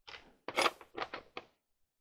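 About five short, scraping handling noises in quick succession over a second and a half, then they stop.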